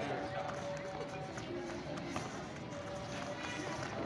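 Background music with children's voices over it.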